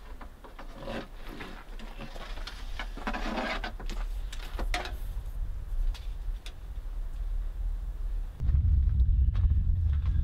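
Rubbing, scraping and small knocks of a cable being worked through a hole in a truck camper's wall and ductwork. About eight and a half seconds in, a steady low rumble starts and continues.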